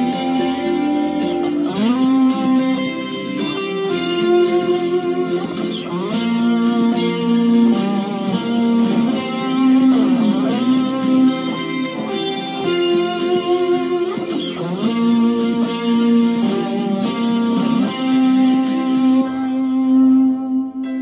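Fender Stratocaster electric guitar playing a single-note melodic lead with several string bends, over a steady high ticking beat.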